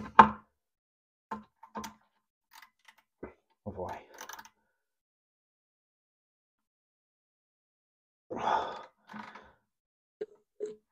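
Screwdriver with a wing-nut adapter bit working a cistern-to-pan wing nut under a toilet: a few short clicks and scrapes in the first few seconds, then quiet. Two short muttered sounds come near the end.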